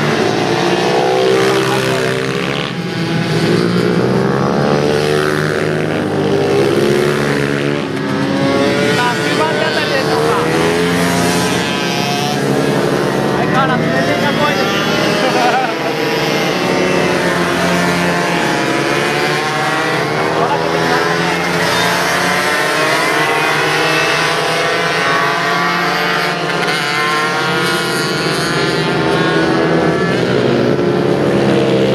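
A pack of small racing motorcycles revving up and down through the corners, several engines overlapping, their pitch rising and falling as they brake and accelerate.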